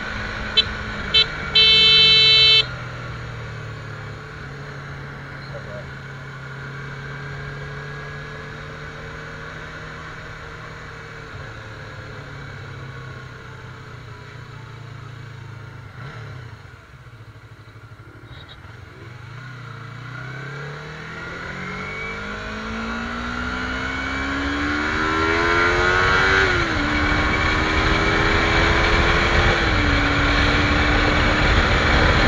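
Sport motorcycle engine heard from the rider's seat: two short horn toots and a honk of about a second near the start, then the engine running steadily at low revs, easing off briefly past the middle, and revving up hard through the gears with an upshift near the end, growing louder as it speeds up.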